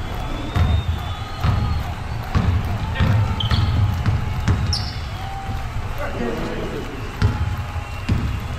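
A basketball bounced on a hardwood gym floor, several bounces at uneven intervals, with a short high shoe squeak about halfway through. Players' voices are heard in the background.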